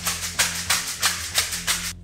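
Pair of hand-held Weck Method ProPulsers rattling in a steady rhythm, about three shakes a second, with each bounce on the balls of the feet, over soft background music.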